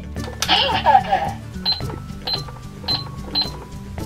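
Keys pressed on a toy McDonald's electronic cash register, each press giving a short high beep: four beeps about half a second apart, after a brief noisy electronic sound near the start.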